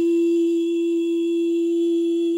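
A woman's voice holding one long, steady note with no accompaniment.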